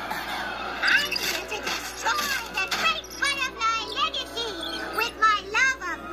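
Cartoon soundtrack played from a TV: music with short, high-pitched voices that rise and fall quickly, coming thickest in the second half.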